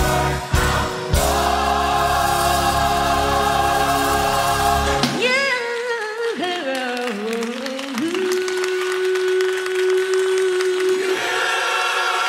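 Gospel choir singing a full held chord over bass accompaniment. About five seconds in the bass drops out and a sliding melodic line follows, then a single long note is held until the full choir and band come back in near the end.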